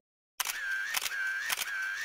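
Camera shutter sound effect, starting about half a second in and repeating three times about half a second apart, each shutter click carrying a short high tone.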